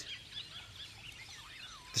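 Faint birds chirping: a dense scatter of short, quick high chirps, with a lower falling whistle near the end.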